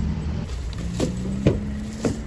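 Low steady rumble of car engines in a parking lot, with two sharp knocks about a second and a second and a half in.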